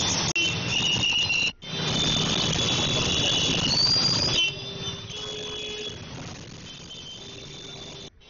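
Flood water gushing and bubbling up through a street drain, a steady rushing with thin high whistling tones above it. It turns quieter about halfway through, with a low hum coming and going.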